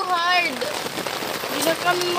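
Heavy rain falling on a tent's fabric, heard from inside the tent as a steady hiss.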